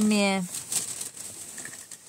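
A child says "no", then faint crackling and rustling as he eats Doritos tortilla chips from a cardboard box.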